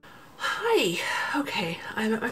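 A woman talking, starting about half a second in.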